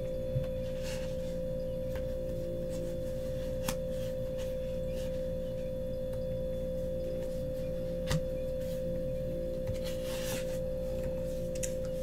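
A steady humming tone held at one pitch, with two soft clicks and a faint rustle of paper slips being handled.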